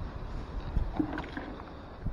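Low, uneven rumble of wind and movement on a body-worn camera's microphone, with faint knocks from handling.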